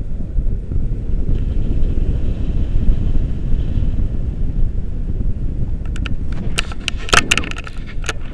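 Wind buffeting the microphone during a tandem paraglider flight, a steady low rumble. In the last two seconds a quick run of sharp clicks and rattles cuts in over it.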